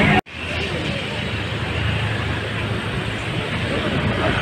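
Steady outdoor background noise with a low hum and faint voices of people in the background. The sound drops out for an instant near the start.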